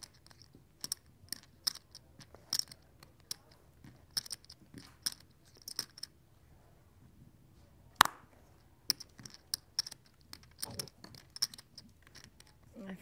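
Clay poker chips clicking together in a player's hand at the table: a run of short, sharp clacks at an uneven pace, with a pause and then one louder click about eight seconds in.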